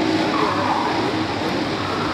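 Several racing kart engines running together as the pack passes, a dense steady drone, with one engine's pitch rising about half a second in.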